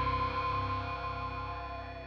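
Closing held chord of a heavy metal song: distorted electric guitar with bass, ringing on and dying away steadily.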